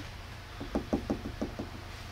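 A quick run of about seven light taps, lasting about a second, from a hand tapping on the front bodywork of a Porsche GT4 RS.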